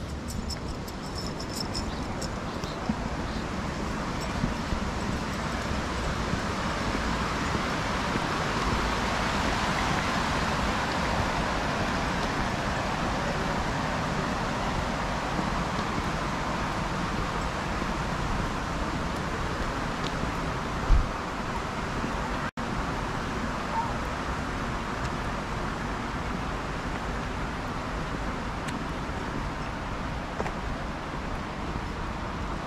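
River water rushing over a weir: a steady rush that swells about a third of the way through and then slowly fades, with wind rumbling on the microphone. A single brief thump about two-thirds of the way in.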